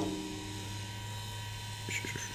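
Steady low electrical hum with a faint, thin high tone running through it, and a few faint ticks near the end.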